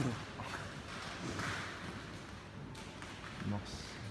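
Quiet room with a faint murmur of voices in the background, and a short spoken exclamation near the end.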